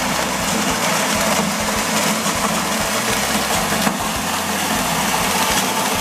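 Electric coffee huller running steadily, its drum rubbing the parchment husk off dried coffee beans, with a dense rattle of beans passing through.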